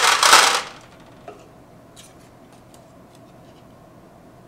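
Smooth pebbles pouring out of a plastic cup and clattering onto each other and into an aluminium baking pan, stopping abruptly under a second in. A few faint clicks follow.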